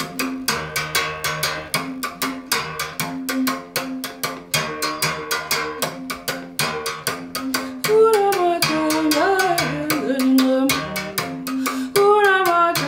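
Gourd-resonated musical bow, its string struck with a stick in a quick steady rhythm that alternates between two low notes. A voice begins singing over it about two-thirds of the way in.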